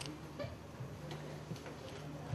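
Quiet room tone: a low steady hum with a few soft, irregular clicks.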